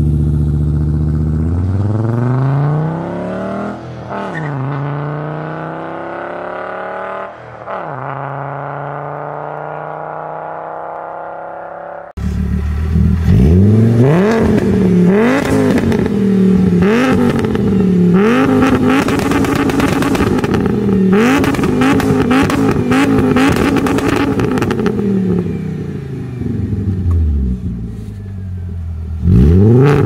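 Volkswagen 2.3-litre VR5 five-cylinder engine heard through the exhaust of a Golf Mk4 pulling away: the revs climb, drop at two upshifts about four and seven and a half seconds in, and the sound fades as the car drives off. After a sudden cut, a VR5-swapped Golf Mk2 is revved again and again in place, each blip rising and falling, with crackling from the exhaust. Its revs then sink slowly before one more sharp rev near the end.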